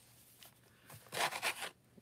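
Crunchy, wrinkled paper napkin stiffened with matte medium crinkling in the hand as it is picked up, a short burst of rustling about a second in.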